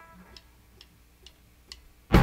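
Faint, steady ticking, about two ticks a second.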